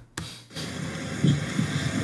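A sharp click, then the steady roadside noise of a police body-camera recording at night: a low hum with wind and traffic hiss and a faint voice.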